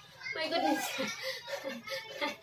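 Indistinct voices with no clear words.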